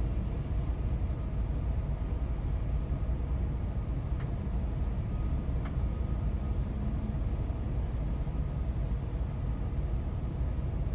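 Steady low rumble inside a parked minivan's cabin, with a couple of faint clicks about four and six seconds in.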